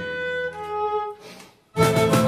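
Live band music: long held notes fade away into a moment of near silence about a second and a half in. Then the full band comes back in loudly, with a voice on a single word of the lyric.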